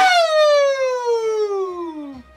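A man's voice in one long, drawn-out call that slides steadily down from high to low pitch.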